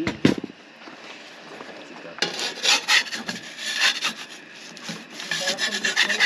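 Pizza peel scraping across a pizza stone as it is pushed under a pizza's crust, in rasping strokes from about two seconds in, after a brief knock at the start.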